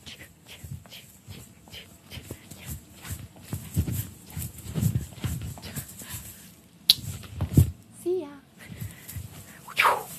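A woman dancing: thumps of her steps and rustling of her clothing, loudest in the middle. Then come wordless vocal noises: a short wavering whine about eight seconds in, and a loud squeal falling in pitch just before the end.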